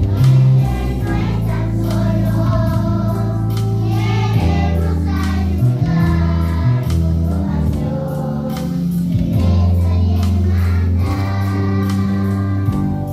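A group of young children singing a song together in unison over an instrumental accompaniment with held bass notes that change every second or two.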